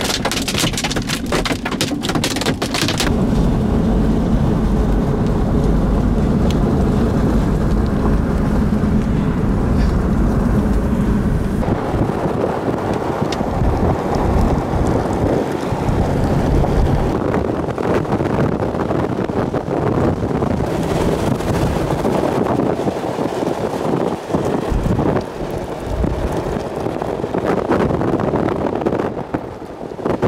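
Heavy rain and wind noise on a vehicle driving through a thunderstorm, with tyre and road noise under it. Dense pattering of drops or hail hitting the vehicle marks the first few seconds. The sound changes abruptly twice, about three and twelve seconds in.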